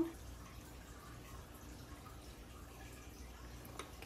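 Quiet kitchen room tone with a steady low hum, and one faint sharp click near the end.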